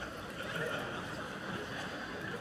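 Audience in a theatre laughing, a diffuse spread of many voices.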